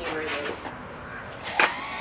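A door lock being worked, with one sharp click about one and a half seconds in, and faint voices around it.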